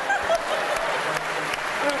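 Theatre audience applauding and laughing: a dense patter of many hands clapping, with voices laughing.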